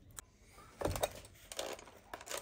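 Faint clicks and brief scratchy handling sounds from an electric carving knife and foam, with no motor running: the knife is unplugged.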